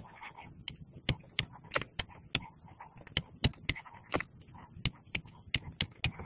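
A pen stylus tapping and clicking against a tablet screen while handwriting: a string of sharp, irregular ticks, about three a second.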